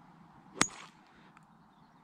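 A golf club striking the ball on a full swing: one sharp crack with a brief high ring, about half a second in.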